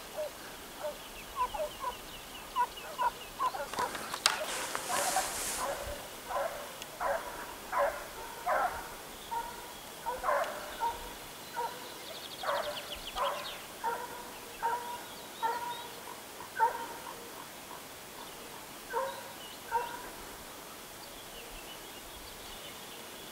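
Distant hunting hounds baying on a hare's scent trail: short, pitched cries repeating irregularly, about one or two a second. A rush of wind noise comes on the microphone about four seconds in.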